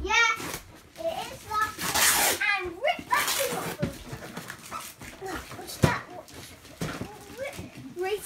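Children's short, high-pitched squeals and calls while wrapping paper is rustled and torn off a present, with a single sharp knock near the end.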